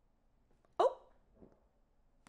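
One brief wordless vocal sound from a woman, a quick pitched exclamation about a second in, acting out a reaction. Otherwise near silence.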